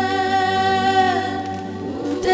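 Vocal music on the film's soundtrack: singing voices hold one long note, which bends down and eases off a little past halfway through.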